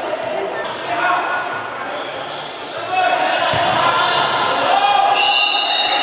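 Futsal game sound in an echoing gymnasium: shouting voices of players and spectators, with the ball striking the hard court. It gets louder about three seconds in.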